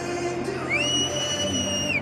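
A single shrill whistle from a stadium fan, sliding up into a held high note for about a second and dropping away near the end, over the steady din of the stands: the home crowd whistling in derision at the visiting team.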